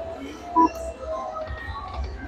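Dragon Link Panda Magic slot machine playing its electronic spin music and chime tones as the reels spin, with one short, loud beep about half a second in.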